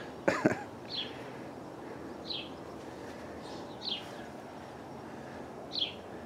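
A small bird giving short, high chirps that fall in pitch, one about every one and a half seconds, four times, over steady outdoor background noise.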